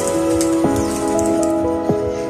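Background music: held melodic notes that change every half second or so, over soft struck beats and a light hiss.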